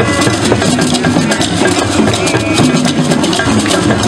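Traditional Ghanaian drum ensemble playing a dense, steady dance rhythm on hand drums.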